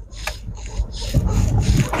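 Jeep Commander driving slowly over a rough dirt track, heard from inside the cab: a low rumble with irregular crunching and rattling from the tyres and body, heavier in the second half.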